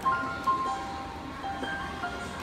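Roland JUNO-Di synthesizer keyboard playing slow, sustained single notes, a new note sounding about every half second.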